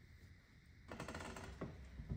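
Quiet room tone, then from about a second in a run of soft clicks and rustles from the cross-stitch fabric and its plastic embroidery hoop being handled.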